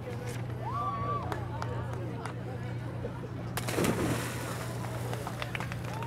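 Two people jumping feet-first into icy open water: a sudden splash about three and a half seconds in, then churning water. Before it come faint shouts and one held cry, over a steady low hum.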